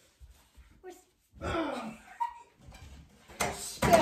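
A voice calls out twice, words unclear: once about a second and a half in, and again near the end. A few light knocks come before it, and a sharp hit or clatter comes near the end.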